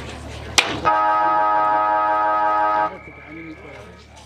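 Football ground siren sounding one steady, unwavering blast of about two seconds, then cutting off suddenly. It comes just after a sharp click and signals the start of the quarter.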